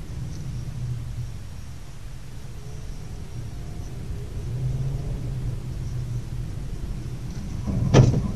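Car engine and road rumble heard from inside a moving car through a dashcam, steady and a little louder about halfway through. A sudden loud sound comes near the end.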